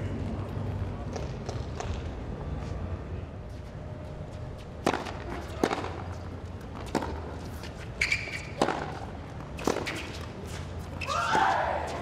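Tennis rally: sharp racket strikes on the ball roughly once a second, over a low crowd murmur. Crowd applause swells near the end as the point finishes.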